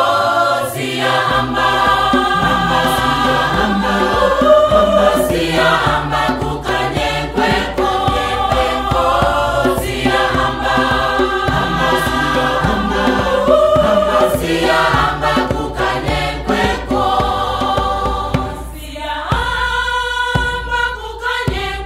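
A choir singing with instrumental accompaniment, a low steady bass coming in about a second in.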